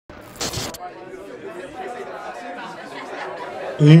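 A brief hiss about half a second in, then a faint murmur of many voices talking at once. Near the end a man's voice calls out "hé, hey".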